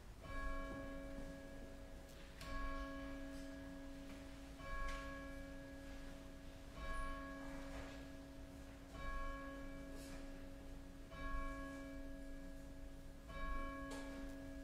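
A single church bell tolling, seven strokes about two seconds apart, all on the same note, each stroke ringing on into the next.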